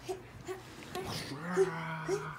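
A drawn-out, low, moo-like vocal groan from a person, held for about a second from just past the middle, after a string of short soft blips about twice a second.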